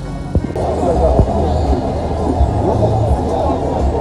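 Indistinct voices mixed with background music, with an abrupt change in the sound about half a second in.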